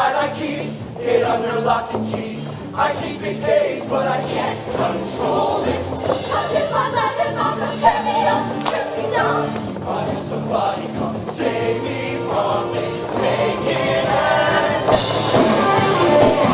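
A show choir singing in full voice over instrumental backing with steady low bass notes. The music grows louder near the end.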